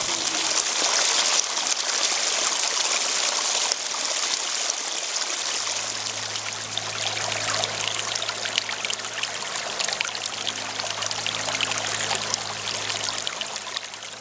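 Small mountain stream running over rocks in a shallow riffle: a steady rushing trickle of water.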